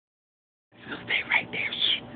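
A person whispering a few short words, starting under a second in after silence.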